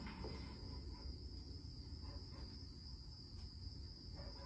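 Faint, steady high trill of crickets over a low rumble.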